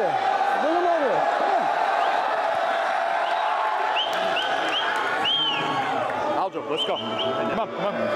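A large crowd cheering and shouting without a break, with men's voices shouting over the din and several short high calls about halfway through.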